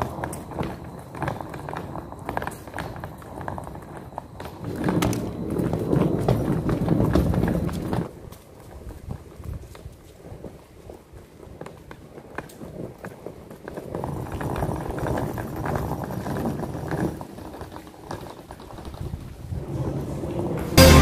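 Small wheels of a rolling suitcase clattering over a paved path in a fast, irregular run of clicks, louder in two stretches, with footsteps.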